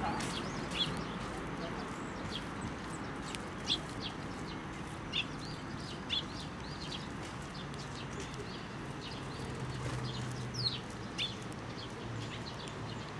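Eurasian tree sparrows chirping: short, scattered chirps, a dozen or so, a few of them louder, over a steady background hiss.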